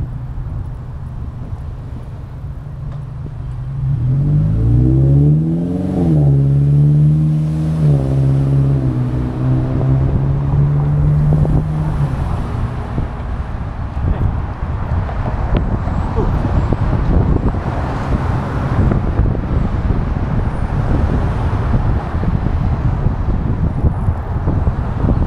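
Street traffic heard while riding: a motor vehicle engine hums steadily, then rises and falls in pitch about four to eight seconds in. Past the halfway point it gives way to rushing wind noise on the microphone.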